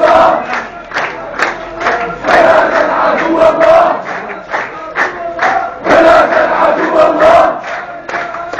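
A large street crowd of protesters chanting slogans in unison, loud chanted phrases rising and falling with short lulls between them.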